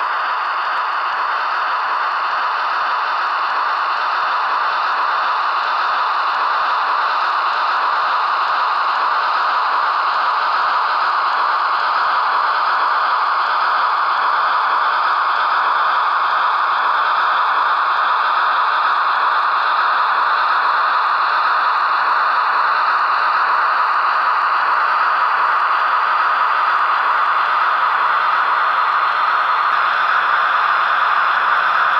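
Steady, loud rushing hiss with faint whistling tones that drift slowly up and down in pitch.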